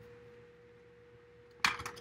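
A faint, steady high-pitched tone throughout, then, about one and a half seconds in, a quick flurry of sharp clicks and rustles as oracle cards are handled and shuffled.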